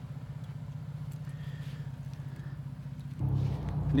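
Dodge Ram diesel pickup engine idling steadily with a low, fast, even pulse, a little louder for the last second.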